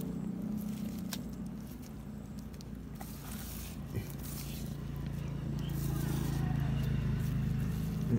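A steady, low motor hum that grows louder over the second half, with a few faint clicks from hands crumbling fresh cow dung over soil.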